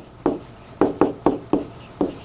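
Handwriting on a large touchscreen display: about seven short taps and strokes against the screen in quick, uneven succession.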